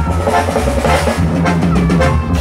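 Live band playing an instrumental break between sung verses: drum kit with bass drum, a steady bass line and a short melodic figure repeating over and over.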